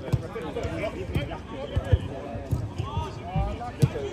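Players' voices calling across a five-a-side football pitch, with a scatter of sharp thuds from the game: ball strikes and footfalls on artificial turf. The loudest thud comes near the end.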